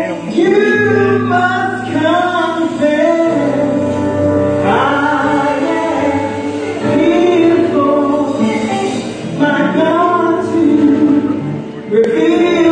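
Live gospel song: a female lead vocalist sings over a church band of electric guitar, electric bass and keyboards.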